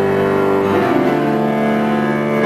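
Live chamber music: a low bowed string instrument with piano, playing long held notes that change about three-quarters of a second in.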